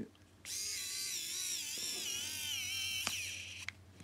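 Wowstick cordless electric precision screwdriver whining as it drives a tiny screw into a plastic housing. It starts about half a second in and runs for about three seconds, its pitch wavering and sagging a little before it stops.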